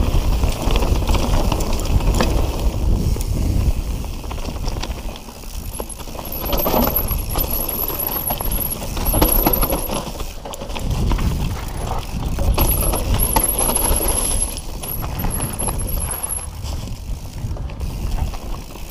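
Mountain bike riding down a leaf-covered dirt trail: tyres rolling over dry leaves, roots and stones, the bike rattling and clicking over the bumps, louder in surges. A thin high whine comes and goes.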